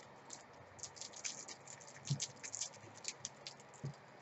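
Thin clear plastic packaging crinkling and crackling in faint, irregular little clicks as a makeup brush is worked out of its sleeve by hand.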